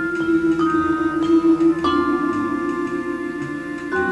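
Vibraphone played with mallets: a few notes struck about half a second apart and left ringing, over a steady, pulsing low held note of accompaniment that changes about two seconds in.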